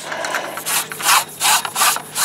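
Aluminium pipe extension being worked back and forth in the end of a telescoping painter's pole, a rhythmic scraping rub of about five strokes.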